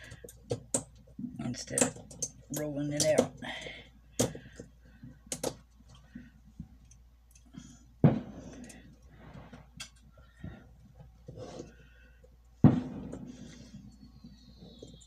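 Pliers tearing the nickel strip off the cells of an LG MH1 lithium battery pack, a run of sharp metal-and-plastic clicks and snaps. The two loudest snaps come about 8 and 12.5 seconds in.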